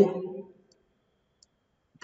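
The last word of a man's lecturing voice fading out in the first half second, then near silence with a faint click about one and a half seconds in.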